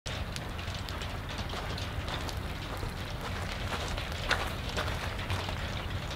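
Outdoor background noise: a steady low rumble under a haze of noise, with scattered faint crackles and ticks.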